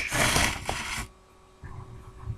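About a second of close rustling handling noise as trading cards and pack wrapping are moved near the microphone, followed by a brief lull and faint low handling bumps.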